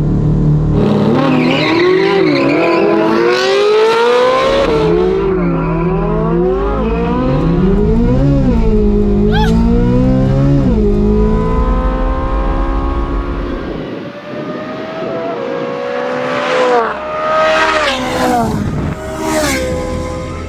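A 2023 Corvette Z06's flat-plane-crank V8 is accelerating hard under full throttle, heard from inside the cabin. Its pitch climbs and drops again and again as it runs through the gears, then falls off. Several sharp high-pitched squeals come near the end.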